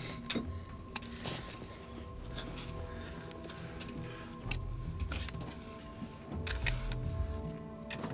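Background music with held tones over a low pulse, and scattered short clicks and knocks throughout.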